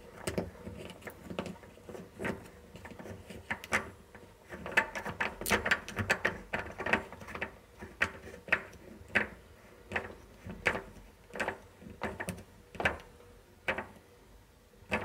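Small brass-based bulb being screwed by hand into the plastic lamp socket of a Bosch refrigerator's interior light: short clicks and taps of glass, fingers and plastic. They come in quick runs in the middle, then settle into an even pace, a little more than one a second, near the end.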